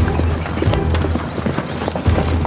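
Pounding hoofbeats of a running herd of bulls and a galloping horse on dirt, irregular and overlapping, over background music with sustained low notes.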